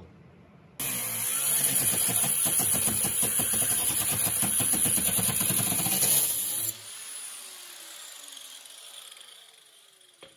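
Handheld grinder with a cut-off disc cutting into the steel underbody of a car, starting abruptly about a second in and running steadily under load for about six seconds. It is then let off and spins down with a falling whine that fades away.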